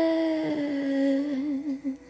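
A sped-up (nightcore) female voice holds one hummed note that sags slightly in pitch, wavers near the end and then breaks off.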